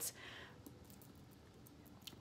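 Near silence between phrases: a faint in-breath just after the start, then a few faint small clicks.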